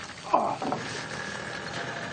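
A wounded man's short guttural groan about a third of a second in, falling in pitch, followed by a fainter second grunt.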